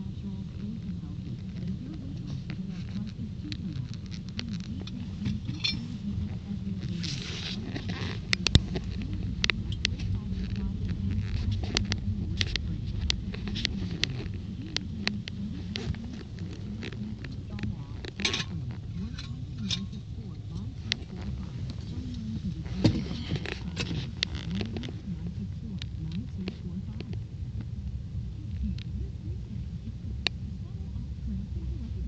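Ram pickup truck driving on a gravel road, heard from inside the cab: a steady low rumble of engine and tyres, with many scattered clicks and knocks from stones and cab rattles and a few brief hissy patches.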